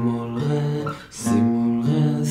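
Guitar playing three-note G minor triad voicings, a few chords in turn, with a short break about a second in before the next chord rings.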